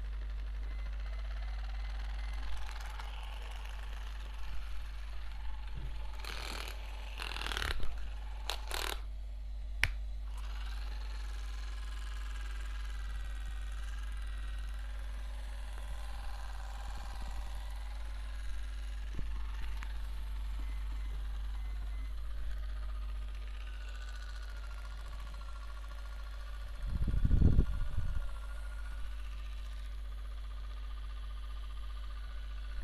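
Small handheld electric face device running against the cheek, a thin whine that wavers slightly in pitch as it is moved, over a steady low hum. Brief rustling handling noises come before it starts, and there is a short loud low rumble near the end.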